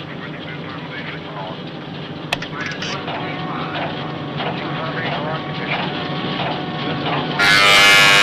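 A low steady hum with faint voices under it, then about seven and a half seconds in a loud, harsh electric buzzer sounds for about a second, a communications call signal.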